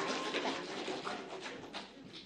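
Audience applause dying away, thinning to a few scattered last claps.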